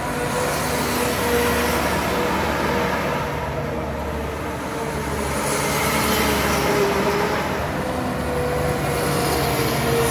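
The triple-turbo Hino 7.7-litre inline-six diesel of a custom tracked rice harvester running steadily under way as the machine drives across the field. The engine's drone carries a steady whine, dips slightly a few seconds in and then swells again.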